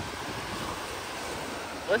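Small waves breaking and washing up the sand, a steady even hiss, mixed with some wind on the microphone.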